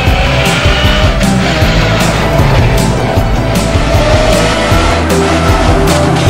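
Suzuki Swift Sport rally car's four-cylinder engine revving hard under acceleration, its pitch rising and falling between gears, with rock music underneath.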